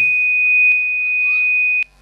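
A steady, high-pitched single-note whistle from the public-address microphone system, the typical ring of microphone feedback. There is a small click partway through, and the tone cuts off suddenly with a click near the end.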